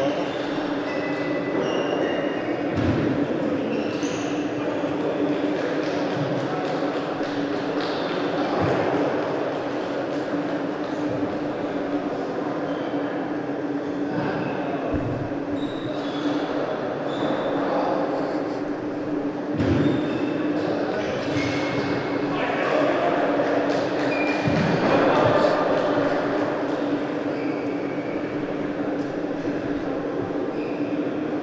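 Ambience of a large indoor hall: indistinct voices over a steady low hum, with a few scattered knocks.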